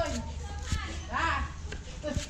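A cleaver chopping herbs on a wooden chopping block: a couple of sharp knocks. Children's voices are heard at the same time.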